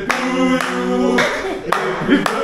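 A group of men singing together in held notes, with hands clapping along, sharp claps about every half second.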